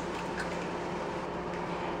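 Steady background hum and hiss of room noise, with one faint click a little way in; the jarred sauce pouring into the pot makes no clear sound of its own.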